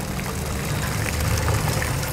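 Steady outdoor background noise: an even hiss over a low rumble, with a faint steady tone.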